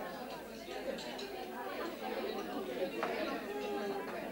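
Many young people's voices chattering at once over a meal, with a few light clinks of cutlery.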